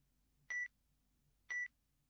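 Countdown timer sound effect beeping once a second: two short, high beeps a second apart, marking off the seconds of the countdown.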